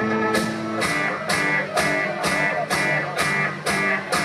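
Live rock band playing an instrumental passage between sung lines: a steady drum beat of about two hits a second under sustained keyboard chords.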